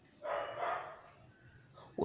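A dog barking faintly in the background: one short burst lasting under a second, starting shortly after the start.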